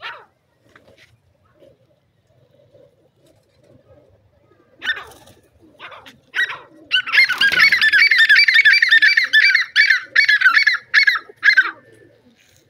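A bird calling: a few short high calls, then a rapid run of high, arching squeaky notes, several a second, lasting about five seconds before stopping just before the end.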